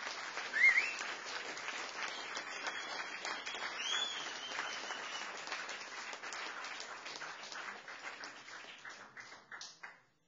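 Audience applauding, with a couple of short whistles, one about a second in and one near the middle; the applause cuts off suddenly at the end.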